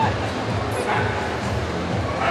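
A dog barking over the steady chatter of a crowd in a large hall.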